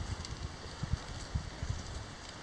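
Wind on the camera microphone: low, uneven rumbles.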